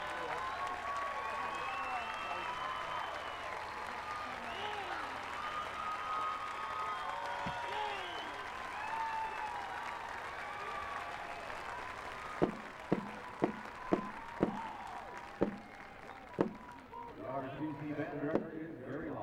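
Stadium crowd applauding and cheering, with many voices shouting over the clapping, fading as it goes on. About twelve seconds in, a string of about seven sharp hits close to the microphone sounds, roughly two a second.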